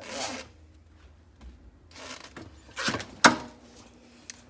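Handling noises at a heat press: a short rustle of fabric and sheet at the start and again about two seconds in, then two sharp clacks close together about three seconds in, the second the loudest.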